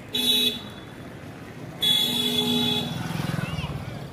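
Vehicle horn honking twice: a short toot, then a longer one lasting about a second. A low pulsing rumble follows near the end.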